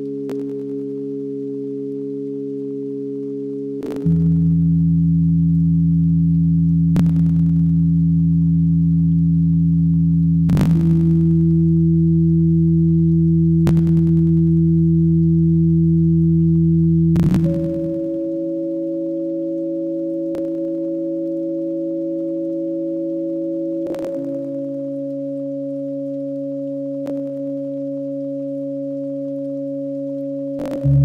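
Ambient electronic drone music: a chord of steady, pure low tones that shifts to new notes every six or seven seconds, with a faint click about every three seconds. It swells louder about four seconds in and drops back near seventeen seconds.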